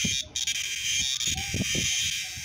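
Male cicada buzzing, a steady high-pitched drone that breaks off for a moment about a quarter second in, with soft knocks of the insects being handled on a wooden table.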